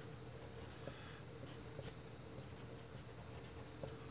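Faint sounds of writing: a few short scratchy strokes, the clearest about a second and a half and just under two seconds in.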